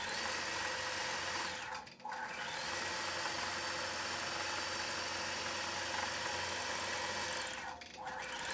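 Gammill Statler Stitcher computer-guided longarm quilting machine stitching through a quilt: a steady whir of motor and needle. It drops out briefly about two seconds in and again near the end.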